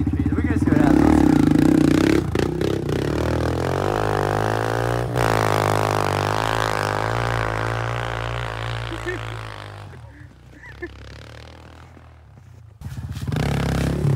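Kawasaki KLX pit bike's single-cylinder four-stroke engine revving as the bike pulls away through snow, then running steadily and fading into the distance about ten seconds in. It gets louder again near the end.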